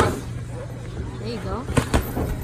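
Boxing gloves landing punches in sparring: two sharp smacks, one right at the start and one near the end, with voices in between.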